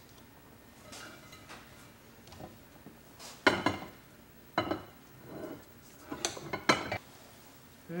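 Cookware clattering: a pot and a ceramic casserole dish knock and clink against each other and the stovetop, with a wooden spoon scraping stuffing between them. The knocks come singly, about five of them, starting about three and a half seconds in.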